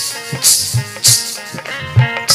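Ghungroo bells jingling in rhythmic shakes about twice a second over a drum beat and pitched melody accompaniment. The bells drop out briefly near the end.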